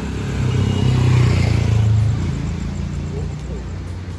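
Motor vehicle engine hum on a wet street, swelling about half a second in and fading over the next two seconds, over a steady hiss of traffic.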